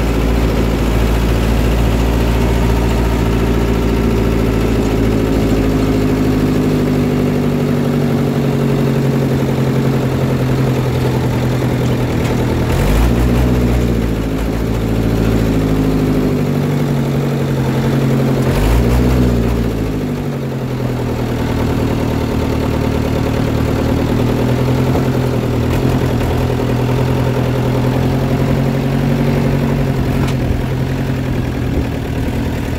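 A 4x4 vehicle's engine running while driving, heard from onboard. Its note breaks and climbs again twice, about 13 and 19 seconds in.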